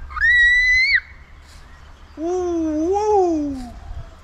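A young child on a tire swing lets out a high-pitched squeal lasting about a second, then, about two seconds in, a lower, drawn-out wordless voice follows that rises and falls in pitch.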